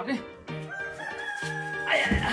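Background music with a steady beat, carrying one long held high note from a little way in.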